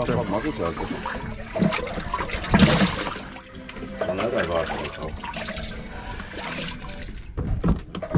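Water sloshing and splashing in a boat's fish hatch as a caught fish is handled in it, with voices over it.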